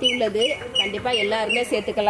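A person's voice, with short high chirps repeating several times in the first second, typical of a bird calling.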